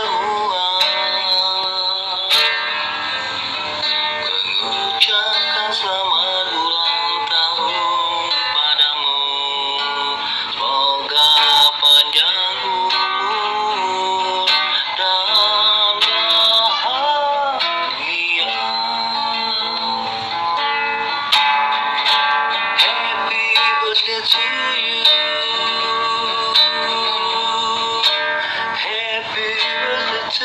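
A man singing with a wavering, drawn-out voice while strumming an acoustic guitar, played back through a phone's speaker.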